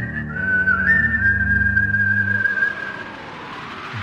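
Film-song music between vocal lines: a single high, whistle-like held note that shifts pitch slightly in the first second, over low sustained bass notes. The bass stops about two and a half seconds in and the high note fades out soon after.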